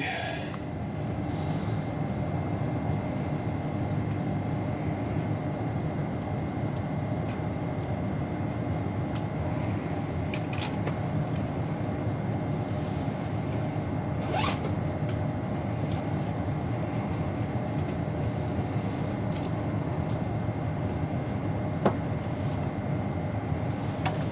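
Steady hum of a GWR Class 802 train carriage interior with the train at a standstill, a constant high whine running through it. There are a few faint clicks and a brief squeak about halfway through.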